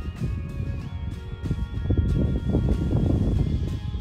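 Freeway traffic on I-80, a low rumble that builds over the last two seconds, with a steady high whine above it.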